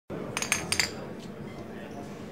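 Glass beer bottles clinking together in a toast: several sharp, ringing clinks in quick succession within the first second.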